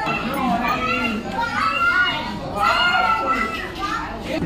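Children's high-pitched voices chattering and calling out, with other people talking around them.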